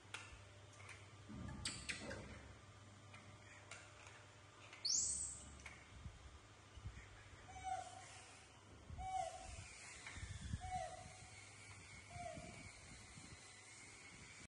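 Four short hooting calls, evenly spaced about a second and a half apart, in the second half, over light clicks and scrapes of a table knife spreading bread. About five seconds in, a brief high squeak rises sharply in pitch and is the loudest sound.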